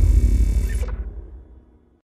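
The tail of a logo-intro sound effect: a deep, low rumble dying away steadily, fading out to silence shortly before the end.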